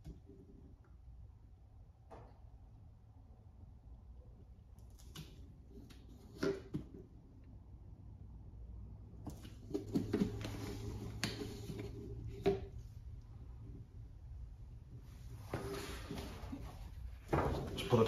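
Motor oil pouring from the spigot of a bag-in-box container into a plastic measuring jug. It is faint at first with a few handling clicks, and the stream grows louder about halfway through. Near the end a louder rustle comes as a shop towel is pressed over the spout.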